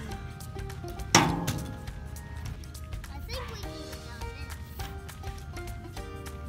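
Background music with steady held notes. About a second in, a single sharp clank rings out briefly: a toy monster truck striking the skatepark ramp.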